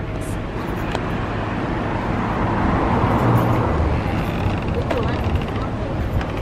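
A car driving past on a city street, its tyre and engine noise swelling to a peak about halfway through and then easing off.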